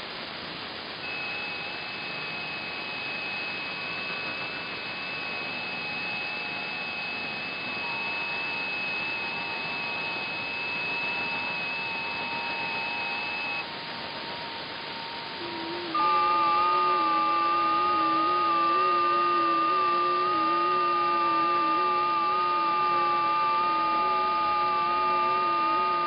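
Shortwave receiver audio in upper sideband on the 40-metre FT8 frequency (7.074 MHz): steady receiver hiss with several faint steady tones from FT8 digital stations, each tone stepping slightly in pitch. The first set of tones stops about 13 seconds in, and a new, louder set starts a couple of seconds later at the next 15-second FT8 cycle.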